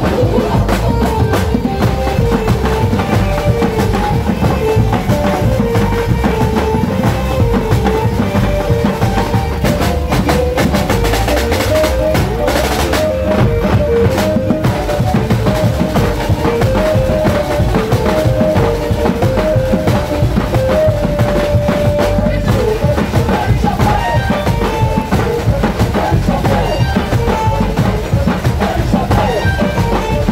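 Carnival street music at full volume: a truck-mounted sound system plays a melody over a steady dance beat, with hand-played snare drums going along with it.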